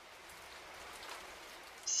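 Rain falling steadily, a faint even hiss of rain.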